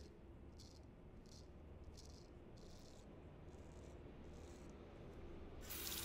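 Faint short scrapes of a Ralf Aust 5/8-inch round-point straight razor cutting through lathered stubble, about eight strokes in slow succession. Near the end a steady hiss rises.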